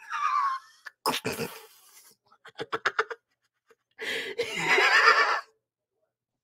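A person laughing hard in high-pitched, wheezy bursts: a falling squeal at the start, a quick run of short breathy pulses about halfway, then a long, high, wavering squeal of laughter near the end.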